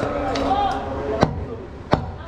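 A heavy butcher's knife chopping through goat head meat and bone on a wooden block: two sharp chops about two-thirds of a second apart, in the second half. Voices talk in the background before the chops.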